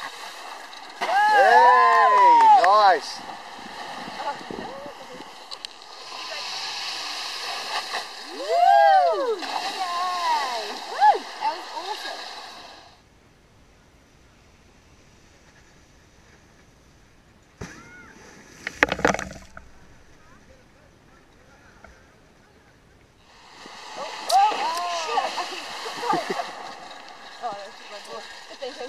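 Wakeboard cutting across the water with a steady spraying hiss, and voices calling out in long rising-and-falling calls over it. Through a stretch in the middle it is much quieter, broken once by a short burst of clicks.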